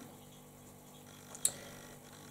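Very quiet room tone, broken once by a single short, sharp click about one and a half seconds in.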